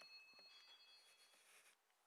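Near silence: shop room tone, with faint steady high-pitched tones that fade out about a second and a half in.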